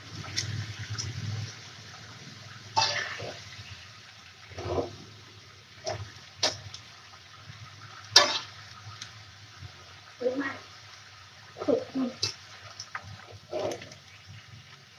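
Metal spatula clanking and scraping against a wok in irregular strokes while vegetables are stir-fried, over a steady sizzling hiss from the pan.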